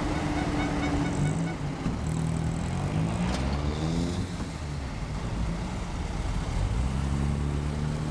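A line of classic cars, among them a Trabant and a VW Karmann Ghia, driving slowly past at low revs. The engine notes rise and fall as they go by.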